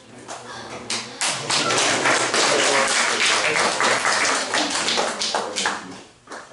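Group of people applauding: dense clapping that builds over the first second or so, holds steady, then dies away near the end.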